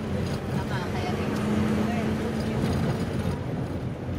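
Engine and road noise of a moving vehicle: a steady low drone with a held engine hum, and faint voices in the background.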